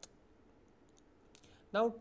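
A pause in a man's speech: quiet room tone with a few faint clicks. Near the end he says "now" and the speech resumes.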